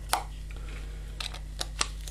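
Light handling sounds from gloved hands working a stick of two-part epoxy putty: a sharp click just after the start and a few fainter clicks later on, over a steady low hum.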